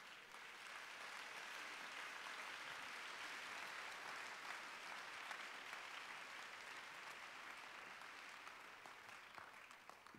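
Congregation applauding, faint, swelling in the first second or two, holding, then slowly dying away near the end.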